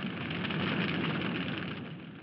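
A large building fire burning: a steady rushing noise of flames that eases off toward the end.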